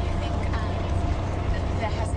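Steady low rumble of a moving bus, heard from inside its cabin.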